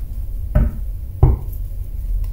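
Two dull knocks of a tarot card deck and hands against a tabletop, about two-thirds of a second apart, over a steady low hum.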